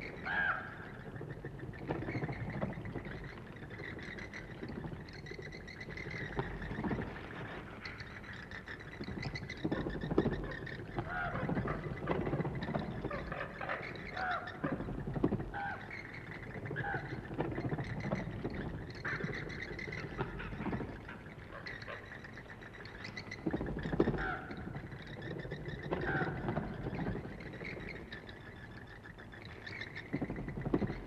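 Bats squeaking in a belfry, short high chirps coming irregularly over a low rumble, with scattered soft knocks and flutters.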